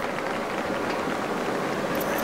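A steady rushing background noise with no distinct events, outdoor ambience on the animated episode's soundtrack.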